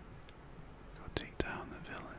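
A man's close-miked whisper: a quiet pause, then two sharp mouth clicks a little over a second in as the whispering resumes.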